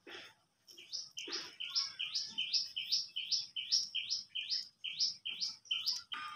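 A bird calling: a steady run of about sixteen short, sharp, high notes, about three a second, starting about a second in.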